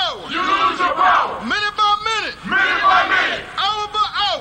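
Loud chanting voices with no words, a series of drawn-out shouted calls, several of them sliding in pitch.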